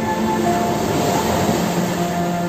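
Sea waves washing over rocks: a rush of surf that swells about half a second in and eases near the end, over soft sustained background music.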